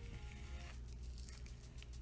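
Faint background music, with soft rustling strokes of a Denman brush being drawn through gel-coated curly hair.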